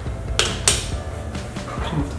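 Two light plastic clicks about half a second in, as toy cookie pieces are set on the game's grandma-figure tray, over faint steady background music.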